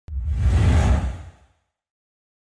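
Whoosh sound effect for an animated team-logo reveal. It starts suddenly with a heavy low rumble and fades out over about a second and a half.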